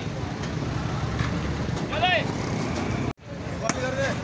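Busy street noise with a steady low vehicle rumble and scattered voices, and a short rising-and-falling shout about two seconds in. The sound cuts out abruptly near the end and comes back with a couple of sharp knocks.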